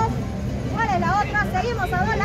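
People talking over background crowd chatter and a steady low street rumble.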